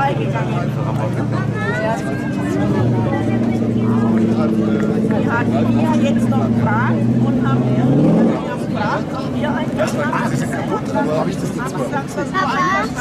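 Engine of a race car of the over-1800 cc class running steadily, stepping up in pitch about three seconds in. It revs up briefly about two-thirds of the way through and then drops away. Crowd chatter goes on over it.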